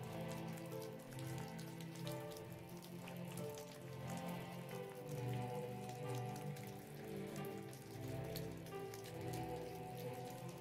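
Rain sound effect, a dense patter of drops, over slow ambient music with long held tones.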